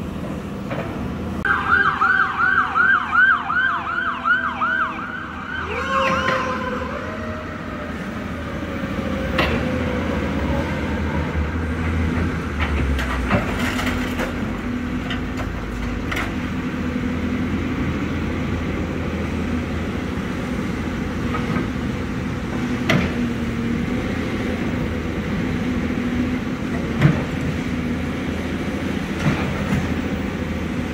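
An emergency vehicle siren in a fast rising-and-falling yelp for a few seconds near the start, winding down with a falling tone. Under it and afterwards, the diesel engine of a tracked excavator runs steadily, with a few sharp knocks.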